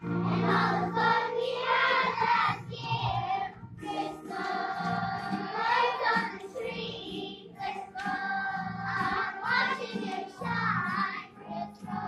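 A children's choir singing a song in unison, phrase after phrase.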